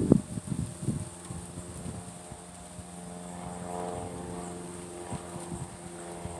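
Knocks and handling noise from baseballs being turned over in the hands, the sharpest right at the start. A distant engine drone swells up in the middle and fades, over a steady high insect buzz.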